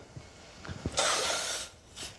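Milk and cream in a stainless steel saucepan on a gas hob, with a few faint clicks of the pan and then a brief hiss about a second in, as the liquid heats.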